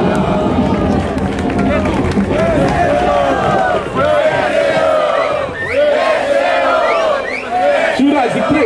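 Large crowd cheering, shouting and laughing together in reaction to a freestyle rap punchline, many voices overlapping with rising shouts throughout.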